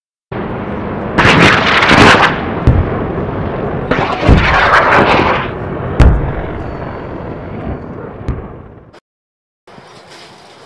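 Dubbed-in battle sound effect of explosions and gunfire: two long rumbling blasts, one about a second in and one about four seconds in, then sharp single cracks around six and eight seconds, over a steady rumble that cuts off abruptly about a second before the end.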